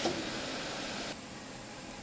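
Room tone: a steady, even hiss of background room noise, which drops a little just after a second in.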